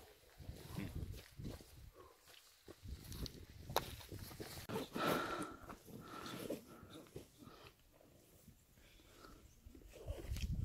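Footsteps and heavy breathing of a hiker climbing a mountain trail, with irregular scuffs and rustles and low gusts of wind buffeting the microphone.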